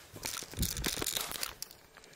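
Rustling, crinkling handling noise, with a dense run of small crackles lasting about a second and a half, as a handheld camera is swung round.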